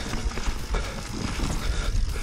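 Yeti SB150 full-suspension 29er mountain bike rolling fast down dirt singletrack: tyres rumbling on the dirt, with frequent short knocks and rattles from the bike over bumps.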